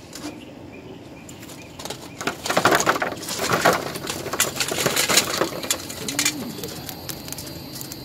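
Hot charcoal pouring out of a homemade coffee-can charcoal chimney onto the grill, a dense clatter of coals tumbling and knocking against the tin can and grate. It starts about two seconds in and dies away about six seconds in.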